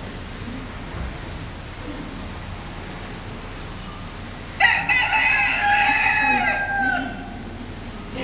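A single rooster crow, starting about halfway through and held for over two seconds, dropping in pitch as it trails off.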